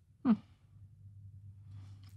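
A woman's brief "hmm", falling in pitch, about a quarter second in, then quiet room tone with a low steady hum.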